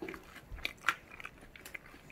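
A person chewing a mouthful of burger, with a few short crunchy clicks, the loudest just under a second in.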